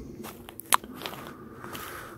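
Faint crackling and crunching with a few small clicks and one sharp click about three-quarters of a second in.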